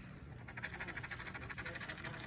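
Quiet, rapid scratching strokes of something hard rubbed across a scratch-off lottery ticket, scraping off its coating, starting about half a second in.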